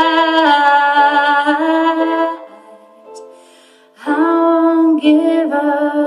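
A woman singing long, wordless held notes in a slow, mournful ballad. There is a breath-length pause about halfway through, and then a new sustained phrase begins.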